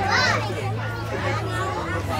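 Busy crowd babble of overlapping voices, many of them children's, none of it clear words, over a steady low hum.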